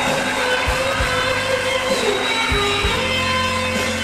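Live blues-rock band playing a slow piece: electric guitar holding long lead notes, one bending down about two and a half seconds in, over steady keyboard chords, with a few low drum hits.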